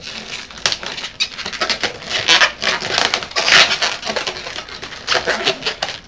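Inflated latex twisting balloons squeaking and rubbing against each other as they are twisted and tied together, an irregular run of short squeaks, busiest in the middle.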